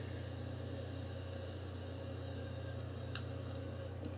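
Steady low hum of room noise with no change in level, and a faint tick about three seconds in.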